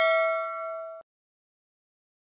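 A bell-like ding sound effect, the notification-bell chime of a subscribe animation, rings out with a few clear tones that fade and then cut off abruptly about a second in.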